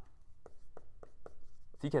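Marker writing on a whiteboard: several short, separate strokes.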